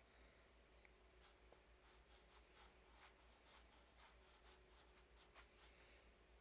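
Faint, quick strokes of a paintbrush on canvas, several a second, starting about a second in, as light-blue paint is laid on.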